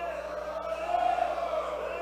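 Wrestling crowd chanting, several voices holding drawn-out, wavering notes.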